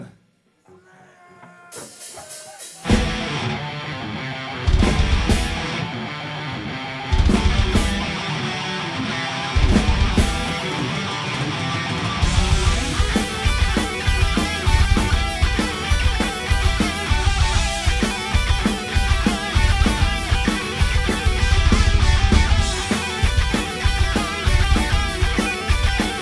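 Live heavy metal band with distorted electric guitars, bass and drum kit starting a song: after a brief near-silent moment a guitar comes in, the full band joins about a second later with heavy accented hits every couple of seconds, then plays on steadily and densely.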